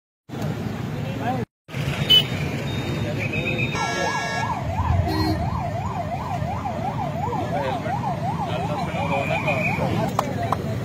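Emergency vehicle siren sounding a fast rising-and-falling yelp, about two cycles a second, starting about four seconds in, over the rumble of road traffic.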